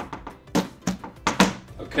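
Background music with a few short, light knocks and taps as a wooden picture frame with a hardboard back is handled and set down on a table.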